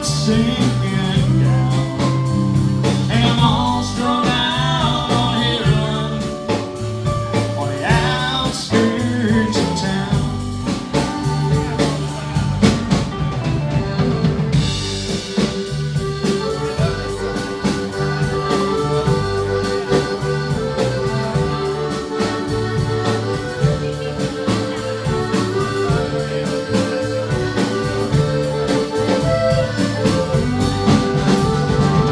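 Live band playing a country-rock song: electric guitars, bass, drum kit and keyboard. The cymbals drop out for a moment about halfway through.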